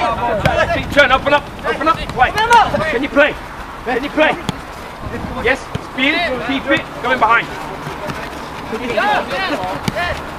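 Short shouts and calls from football players and coaches on the pitch, coming every second or so, with a single sharp knock near the end.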